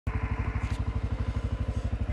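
CF Moto 520L ATV's single-cylinder four-stroke engine running at low, even revs, a steady rapid low beat of about twenty pulses a second.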